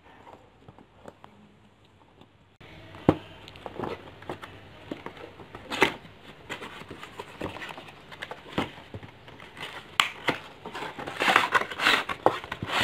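A cardboard doll box being opened by hand: packaging rustles, with scattered sharp clicks and taps. It starts abruptly about two and a half seconds in and gets busier and louder near the end.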